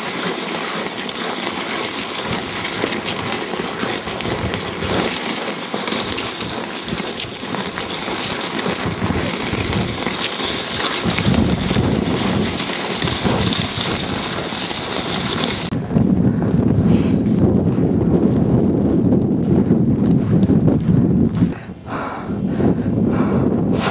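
Wind buffeting the microphone over a steady hiss; about two-thirds through the sound changes suddenly to a heavier, lower wind rumble.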